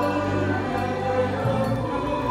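A choir singing a hymn in long, held notes.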